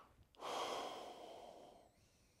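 A person breathing heavily: one long, noisy breath starting about half a second in and fading over a second and a half.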